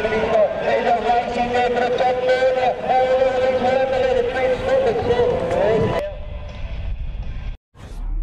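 A man talking continuously and excitedly until about six seconds in, then quieter background noise with a brief drop to silence just before the end.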